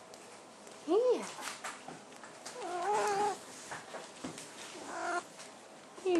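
Sphynx cat meowing three times: a short call that rises and falls about a second in, a longer drawn-out, wavering meow around three seconds in, and a shorter one near the end.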